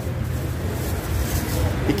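Steady low rumble of outdoor background noise, with no clear event in it.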